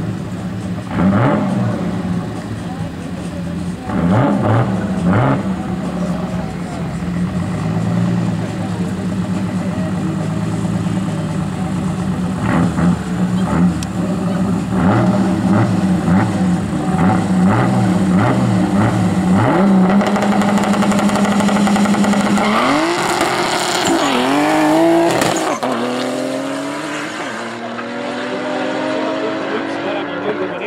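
Two drag-racing cars idling at the start line, blipped up in short revs. About three-quarters of the way in they launch together, their engines climbing in pitch through the gear changes as they accelerate away down the strip and fade.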